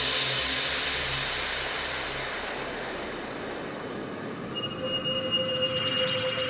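Breakdown of a progressive psytrance track: a long, slowly fading synthesized noise wash left by a crash just before, over held synth tones, with a high synth tone coming in near the end.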